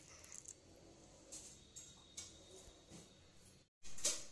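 Faint water being poured from a steel bowl into flour for kneading dough, with a few brief soft rustles; the sound drops out abruptly shortly before the end.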